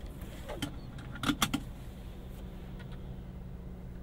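Seatbelt tongue clicking into its buckle, a quick cluster of sharp clicks about a second and a half in, over the steady idle of the truck's 6.2-litre V8 heard from inside the cab.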